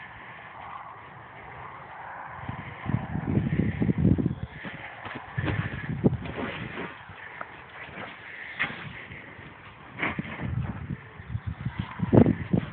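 Irregular low thuds and rustling with a few sharp knocks as a foal nudges and mouths a large plastic play ball on a sand surface close to the microphone.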